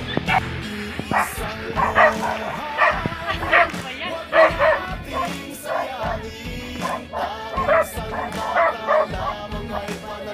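A dog barking repeatedly, about two barks a second, over background music.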